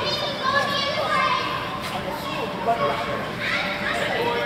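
Background voices in a large indoor hall: children calling and shouting at play, mixed with general chatter.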